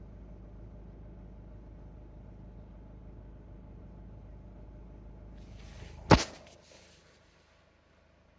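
Low steady hum of a car's cabin with the engine running, the car held up in heavy traffic. About six seconds in comes a brief rustle and one sharp knock, then near silence.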